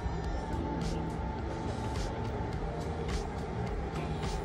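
Shuttle bus engine running steadily, a low rumble.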